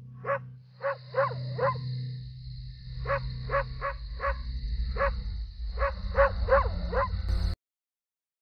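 A large dog barking repeatedly, about a dozen sharp barks in quick groups of two to four, over a steady low hum. The sound cuts off abruptly near the end.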